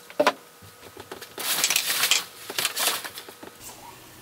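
Foam and plastic packaging sheets rustling and crinkling as a crib panel is pulled out of its shipping box, in two bursts, the first longer and louder.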